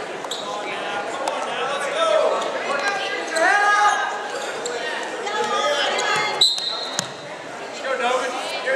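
Shouting voices from the sidelines, echoing in a gymnasium, over the scuffle of a wrestling bout, with a few dull thuds. Near the end comes a short, high whistle note, and the wrestlers break apart.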